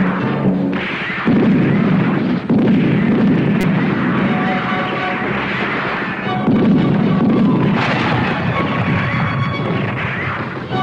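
Film soundtrack of dramatic music mixed with gunfire and explosions, with sudden louder blasts about a second in, at two and a half seconds and near eight seconds.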